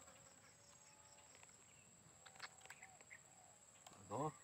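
Near silence: a faint, steady, high-pitched insect drone, with a few faint clicks and short faint chirps.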